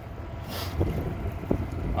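Wind rumbling on the microphone, with a couple of brief knocks about half a second and a second and a half in.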